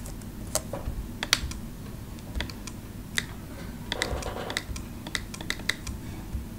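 Computer keyboard being typed on: separate keystrokes with uneven gaps, then a quicker run of several near the end.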